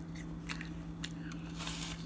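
A child biting into and chewing a crisp raw apple: a few short crunching clicks, then a louder crunching bite near the end.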